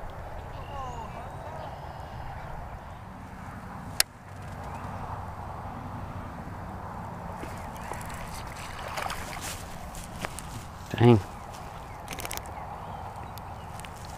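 A small bass splashing in the water as it is played and reeled in on a rod, with a single sharp click about four seconds in.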